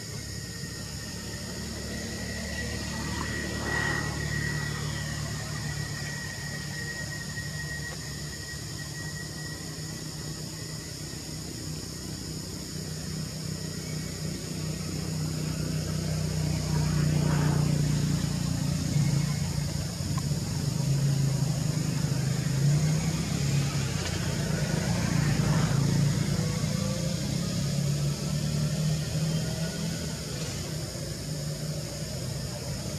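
A motor vehicle's engine running nearby, a steady low drone that grows louder about halfway through and stays up, over a constant high buzzing of insects.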